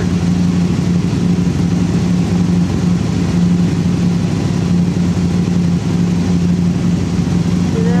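Can-Am Spyder roadster's V-twin engine idling steadily, a low, even hum.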